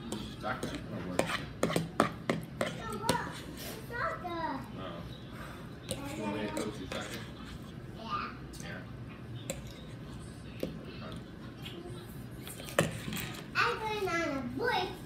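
Children's voices talking indistinctly, mixed with a run of sharp clicks and knocks that is thickest in the first few seconds.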